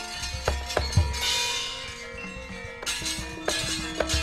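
Live music: ringing struck tones over low drum hits, with a cymbal crash about a second in.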